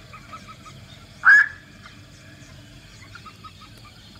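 A black-crowned night heron gives one loud, harsh, short call about a second in, over a quiet open-air background with faint rows of quick short notes.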